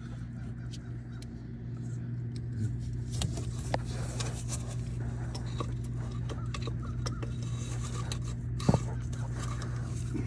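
Light clicks and scrapes of a replacement brush block being handled and fitted into the alternator end housing of an Onan generator, with a sharper click near the end. A steady low hum runs underneath.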